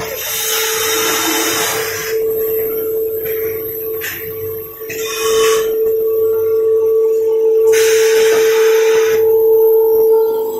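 Paper pulp egg tray forming machine running: a steady motor whine throughout, with three bursts of air hiss. The first hiss lasts about two seconds at the start, a short one comes around the middle, and a longer one comes near the end.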